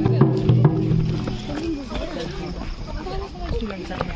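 A steady low droning tone with sharp drum strikes fades out about a second in. After that come people's voices, wavering as in singing or calling, with scattered drum strikes from a procession on the move.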